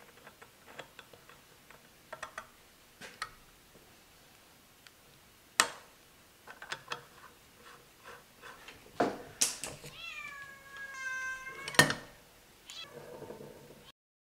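Light metal clicks and clinks of lathe headstock gears and small parts being handled and fitted onto the spindle, with a sharp knock about halfway and another near the end. Just before that last knock, a drawn-out high tone dips in pitch and then holds steady for nearly two seconds.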